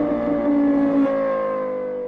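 A steady droning tone with several overtones, slowly sinking in pitch and fading, like an engine or a synthesized intro effect.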